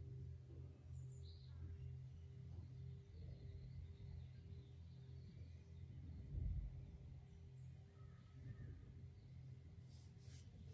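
Near silence: quiet room tone with a faint low hum that pulses on and off steadily, and a faint bird chirp about a second in.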